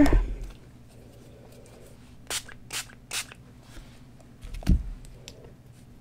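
Small hand spray mister puffing water onto wet watercolour paper: three short, quick sprays about two to three seconds in, then a soft knock near the end.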